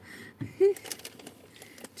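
A quiet pause inside a car, with one short hum-like vocal sound a little over half a second in and a faint click near the end.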